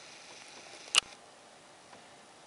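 A single sharp click about a second in, from the camera being handled as it zooms in; otherwise only faint background noise.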